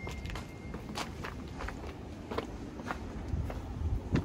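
Footsteps on a gritty stone floor in old masonry ruins, about two steps a second, over a low rumble.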